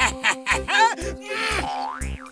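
Cartoon background music with a steady thumping beat about twice a second, and bouncy tones over it that glide up and down in pitch.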